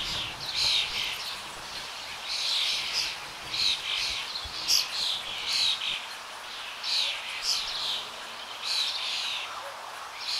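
Small birds chirping: a steady run of short, high chirps coming in clusters every second or so.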